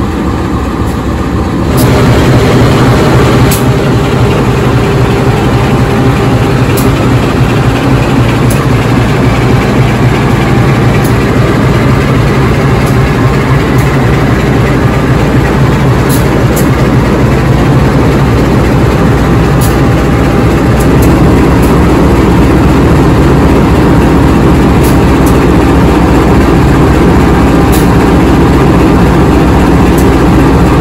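KAI diesel-electric locomotive's engine running loud and steady at close range as the locomotive moves slowly past. Its deep note rises sharply about two seconds in and then holds.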